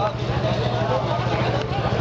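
People talking in the street over a steady low rumble of traffic and engines.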